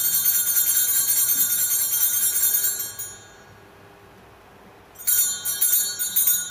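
Altar bells rung at the elevation of the consecrated host: a bright jingling peal that fades out about three seconds in, then a second peal starting about five seconds in.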